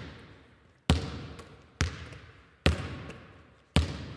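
A basketball bounced slowly on a hard floor, about one bounce a second, four bounces, each ringing out in a long echo as in a gym.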